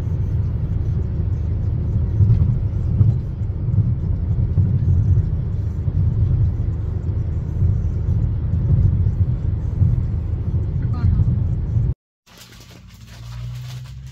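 Steady low road rumble inside a moving car's cabin. It cuts off abruptly about twelve seconds in and gives way to much quieter room sound.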